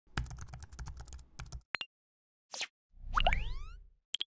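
Outro-animation sound effects: a quick run of keyboard-typing clicks, a short whoosh, then a low thud under a rising, many-toned chime.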